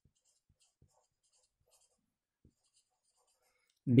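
Marker pen writing on a whiteboard: faint, short scratching strokes of the felt tip as a word is written.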